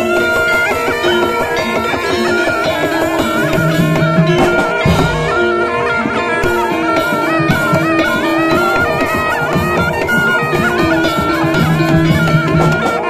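Slompret, a Javanese double-reed shawm, playing a loud, winding melody with bending notes over drums in traditional Javanese ensemble music.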